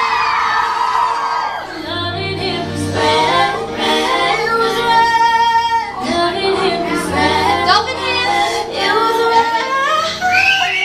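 Female pop vocal group singing live, several voices together into handheld microphones, with a simple accompaniment holding low sustained notes beneath them.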